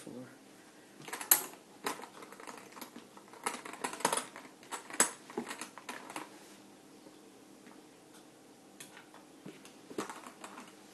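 Handling sounds as a scarf is put onto a handbag: rustling with sharp clicks and knocks. The clicks are loudest about a second in and again about five seconds in, then die down to a few faint ones.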